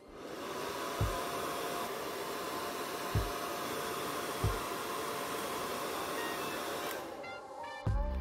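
Hair dryer blowing steadily with a faint whine, switching off about a second before the end. Background music with a soft low beat plays underneath.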